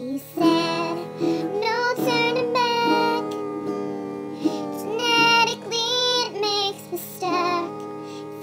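A song: a solo voice singing over instrumental accompaniment.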